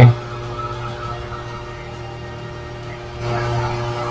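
Steady low background hum with faint steady tones above it, the kind picked up by a desk microphone. About three seconds in, a louder, hissy noise joins it.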